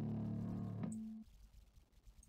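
A low, held note from the bass part of the song playing back through the amp-sim plugin. It stops about a second in with a short click, and near silence follows.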